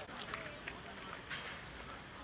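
Football training-ground sound: faint voices calling in the distance, with a few short knocks scattered through it.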